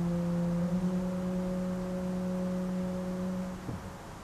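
1885 Hilborne L. Roosevelt pipe organ holding a quiet, sustained chord of plain, almost pure tones, its lowest note changing about a second in. The chord is released shortly before the end, leaving church reverberation.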